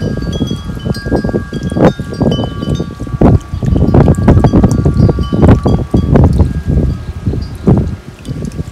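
Wind chimes ringing, several overlapping held tones that fade and are struck again, under loud irregular low gusts of wind buffeting the microphone.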